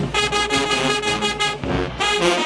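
Marching band brass section, with trumpets and sousaphones, holding one long, loud chord that cuts off about a second and a half in, just before the next blast.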